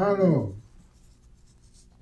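A man's voice ends a phrase, then comes a faint papery rustle as sheets of paper are handled on a lectern.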